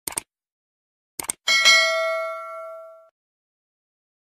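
Subscribe-button animation sound effect. Two quick mouse clicks come at the start and two more about a second later. Then a single bright notification-bell ding rings out and fades over about a second and a half.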